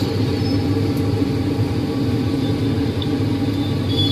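A steady low machine hum with a rumble, holding constant without changes.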